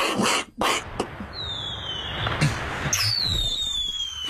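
A man imitating fireworks with his mouth: quick hissing bursts and pops, then two long falling whistles like rockets going off, the second running near the end.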